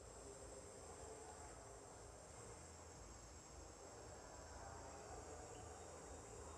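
Faint, steady high-pitched chirring of insects, over a low background rumble.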